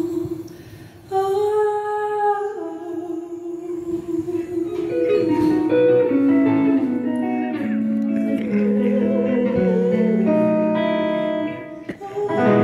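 Live band music: a woman sings a long held note, then an electric guitar plays a slow line of single notes stepping downward while her voice carries on over it. The sound briefly drops away just before the end.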